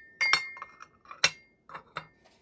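Glazed ceramic dishes clinking as they are set down and nested into a ceramic tray: about five light, separate clinks, each with a brief ring.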